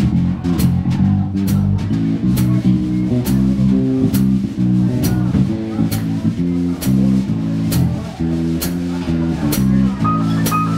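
Live jazz band playing an instrumental: an electric guitar line over walking electric bass, with a drum kit keeping a steady cymbal beat.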